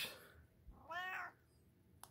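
A domestic cat gives one short meow about a second in, rising then falling in pitch.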